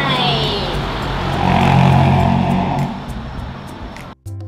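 A motor vehicle's engine passing close by, swelling to its loudest about two seconds in and then fading away.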